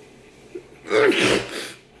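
A man sneezes once, about a second in.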